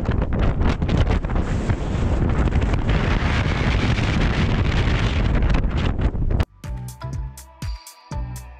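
Strong wind buffeting the camera microphone, a loud, steady rumble. About six and a half seconds in it cuts off abruptly and background music takes over.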